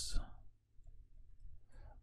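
A few faint computer keyboard keystrokes, typing a short word.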